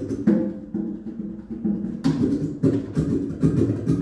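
Acoustic guitar strummed in a rhythmic, percussive pattern with sharp accented strokes, a Brazilian drum rhythm carried over to the strings.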